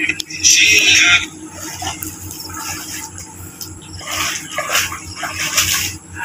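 Water sloshing and splashing as a person wades through shallow sea water, with a short, wavering high-pitched call about half a second in.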